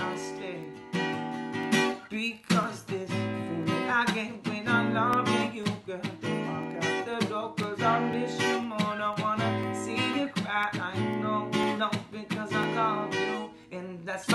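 Cutaway acoustic guitar strummed in a steady rhythm, with a man singing over it.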